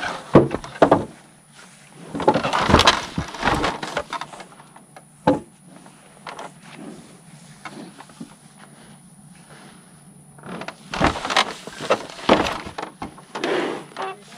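Scattered knocks, bumps and rattles of cattle shifting against the boards and gate of a wooden cattle chute, busiest near the start and again near the end, with a quieter stretch between.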